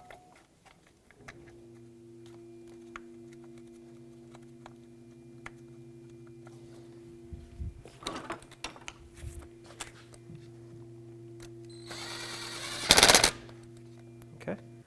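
A steady low hum, with scattered small clicks of parts being handled. Near the end a power tool runs a bolt in with a brief loud rattle, building for about a second and then peaking sharply.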